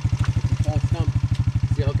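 Dirt bike engine idling with a steady, even putter of about fourteen pulses a second.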